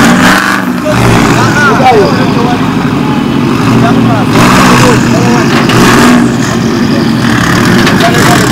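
A car engine running steadily, with people talking over it.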